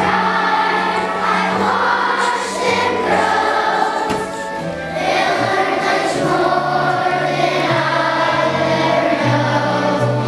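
Fourth-grade children's choir singing together over a bass line of held low notes that change in steps. The singing eases off slightly about four seconds in, then comes back to full strength.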